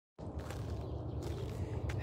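Faint, steady low rumble of outdoor background noise that starts a moment in.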